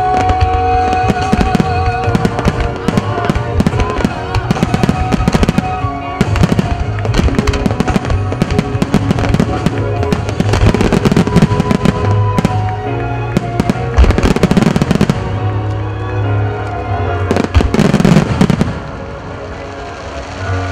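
A dense barrage of aerial fireworks bursting in quick succession, sharp cracks and booms over loud music playing with the display, the heaviest volleys coming about two-thirds of the way in and again near the end before it eases off.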